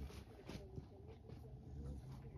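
Faint background ambience: a steady low hum with faint, indistinct voices in the distance.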